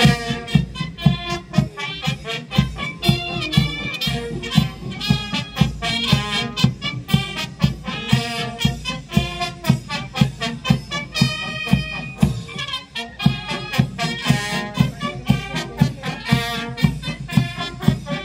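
Marching brass band playing a march, with brass melody over a steady beat of about two beats a second.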